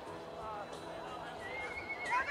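A horse whinnying: a high call begins near the end and breaks into a series of rising-and-falling quavers, over faint voices.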